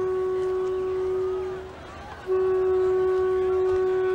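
Background music: a woodwind instrument holds one long, steady note. It fades out briefly about two seconds in and then comes back on the same pitch.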